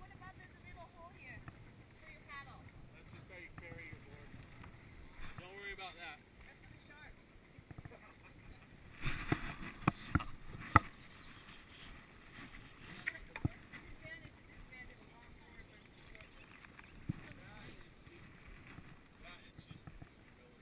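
Faint voices in the first few seconds over low outdoor background, then a cluster of sharp knocks and rustling about nine to eleven seconds in, with a couple of single knocks later: the action camera being handled and repositioned.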